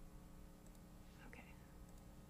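Near silence: quiet classroom room tone with a low hum. About a second in there is one soft, barely voiced "okay".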